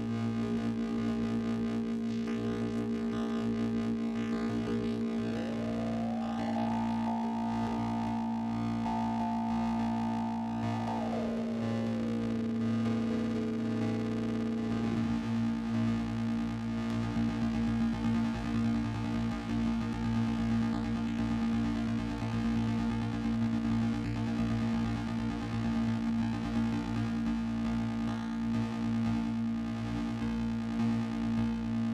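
Eurorack modular synthesizer drone played through a Clatters Sibilla with its EXP-FX pitch-shifting delay expander: a steady low hum under several held tones. About five seconds in, a cluster of tones glides up in pitch and holds, then slides back down between about eleven and fifteen seconds in.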